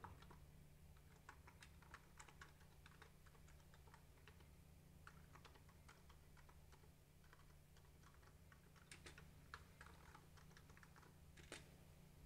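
Very faint, irregular typing on a computer keyboard, over a low steady hum.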